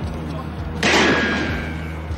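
A sudden loud bang about a second in that rings out and fades over the next second, over a steady low hum.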